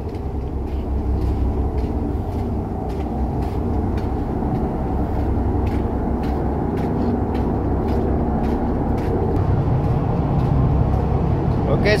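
Steady low rumble of a ship underway, engine and water along the hull, growing a little louder toward the end. Faint footsteps fall on the steel deck about twice a second.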